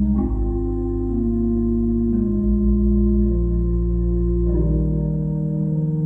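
Pipe organ playing slow, sustained chords over a deep held bass, the upper notes moving step by step about once a second, with a fuller change of chord about four and a half seconds in.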